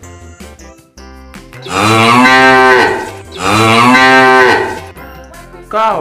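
A cow mooing twice, each moo a long call of about a second, over light background music with a beat.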